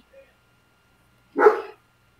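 A single short, sharp bark-like call about one and a half seconds in, with near silence around it.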